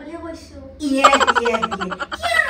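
A person's voice letting out a drawn-out, exaggerated comic sound about a second in, pitched and slowly falling, with a fast pulsing texture.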